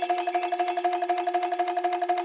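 Bell-like synthesizer patch sampled from the Roland JV-2080 expansion, holding one steady note that repeats in a fast, even flutter of about a dozen strikes a second.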